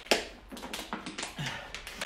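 A man drinking from a clear plastic water bottle: a sharp click as it opens, then a few faint clicks and taps.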